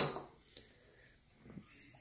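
A sharp click of a poker chip tossed onto a wooden table, followed by a fainter tick about half a second later.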